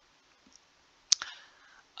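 A single sharp click about a second in, followed by a faint brief hiss, in an otherwise near-silent pause between spoken phrases.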